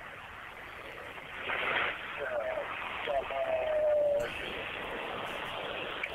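A faint, muffled voice over a steady hiss, with a longer held sound near the middle; the sound is dull, as through a radio or a secondary audio feed.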